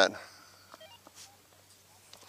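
Two-way radio (walkie-talkie): a voice transmission cuts off just after the start, then a few faint short beeps and light clicks follow about a second in.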